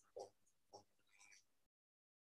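Near silence, with a few faint short squeaks from a marker writing on a whiteboard.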